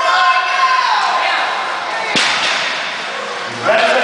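Spectators shouting at a deadlift lockout, their voices trailing off over the first second. About two seconds in, a loaded barbell comes down on the lifting platform with a single sharp thud of iron plates, and the shouting picks up again near the end.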